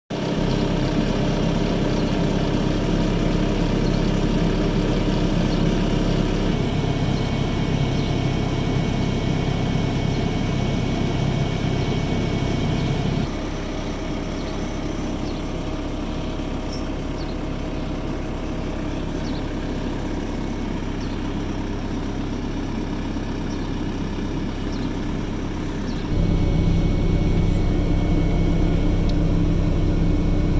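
Diesel engine of a Caterpillar 305D CR mini excavator running steadily at idle, heard from inside the cab, with a steady hum. Its level drops a little about halfway through and steps back up a few seconds before the end.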